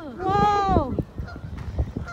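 A goose honking: a short falling call at the start, then one long honk that rises and falls.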